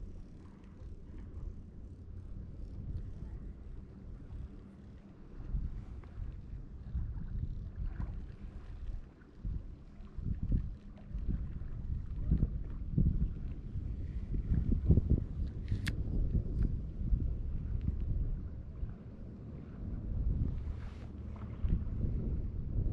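Wind buffeting the microphone, a low rumble that rises and falls in gusts, with a few brief faint clicks.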